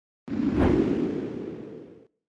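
Whoosh sound effect for the intro title card: a sudden low, rushing swell just after the start with a brief higher hiss in it, then fading away over about a second and a half.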